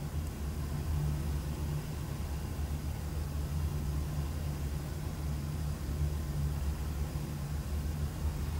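Steady low rumble of background noise, an even hum with no ticks or distinct events.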